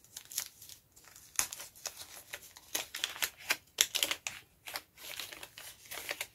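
Paper wrapping crinkling and tearing as a small gift is unwrapped by hand, in irregular crackling rustles.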